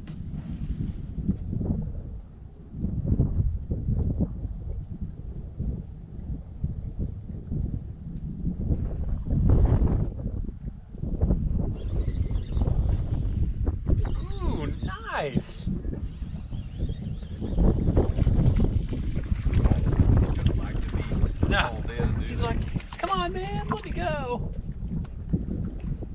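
Wind buffeting the microphone in gusts, with indistinct voices and laughter rising twice, around the middle and again near the end.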